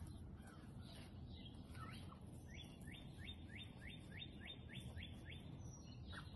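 A songbird singing faintly: a few scattered chirps, then a run of about ten quick rising notes at roughly three a second, over a low steady background rumble.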